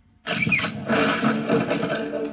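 Blu-ray menu intro soundtrack heard through a TV's speakers. It starts abruptly about a quarter second in with a loud, noisy burst, then music with held notes runs under the effects.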